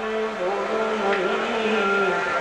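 Harmonium sounding steady held notes in live devotional bhajan music.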